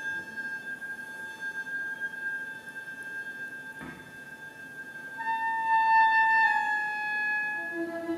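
Chamber ensemble of flute, strings and winds playing: long quiet held high notes, joined about five seconds in by a louder pair of sustained notes that step slightly down, with lower notes entering near the end.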